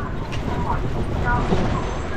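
Steady low rumble of road noise and passing traffic, with a city bus running alongside, heard from an open passenger rickshaw moving along a street; brief faint snatches of voices.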